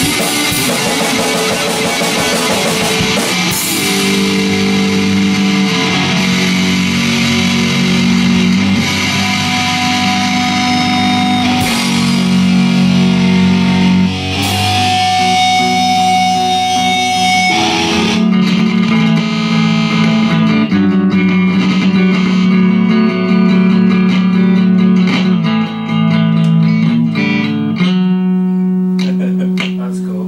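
A rock band of two guitars and drums playing the end of a song. About eighteen seconds in the drums drop away and the guitars ring on through held chords, with a last chord struck near the end.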